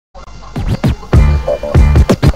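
Hip hop music with turntable scratching: quick back-and-forth record scratches, with a heavy bass beat joining about halfway through.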